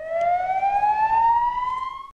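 Ambulance siren wailing, its pitch rising slowly and steadily.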